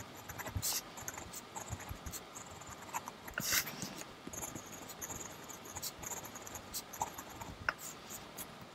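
Steel 1.1 mm stub nib of a Lamy Al-Star fountain pen scratching across paper in short, quick strokes while lettering by hand, with one louder scratch about halfway through.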